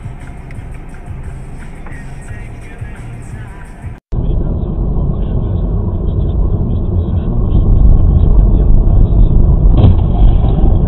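A low hum inside a stopped car with faint voices, then a sudden cut about four seconds in to the loud, steady low rumble of a car driving at speed, heard from inside the cabin by a dashcam.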